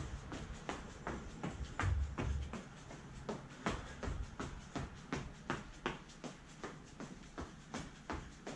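Rhythmic footfalls of running shoes landing on a tiled floor during high knees, about three light impacts a second.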